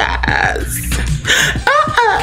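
A man's loud, rough vocal outburst with a falling pitch, made over pop music playing.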